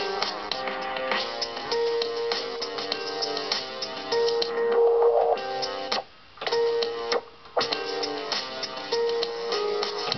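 A producer's own beat playing back from a Logic Pro session: held melodic notes over a steady rhythm. The sound cuts out briefly twice, about six and seven and a half seconds in.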